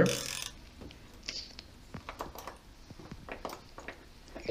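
Hand ratchet and socket on an extension making scattered light clicks and metal taps as 10 mm valve-cover bolts are loosened.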